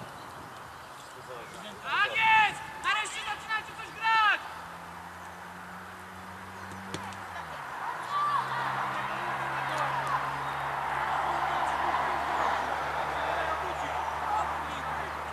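Shouting voices at a youth football match: several loud calls between about two and four seconds in, then from about eight seconds a rising hubbub of many voices shouting together as play crowds the goalmouth.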